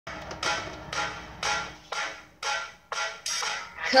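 Instrumental backing track opening with a piano vamp: chords struck about twice a second, each fading before the next. A girl's singing voice comes in at the very end.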